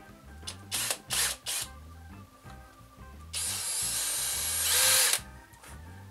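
Cordless drill driven in three short trigger bursts, then run steadily for about two seconds, its pitch rising slightly just before it stops. Background music plays underneath.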